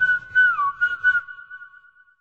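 The whistle hook of a 90s dance track, left alone after the beat stops: a few high notes, one dipping down in pitch, then a long wavering note that fades out near the end.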